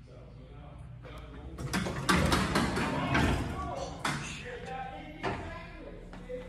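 1950s Otis elevator's single-slide door rolling open with a rumbling clatter, followed by two sharp knocks.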